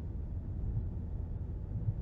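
Steady low rumble of a car's engine and tyres, heard from inside the cabin while driving.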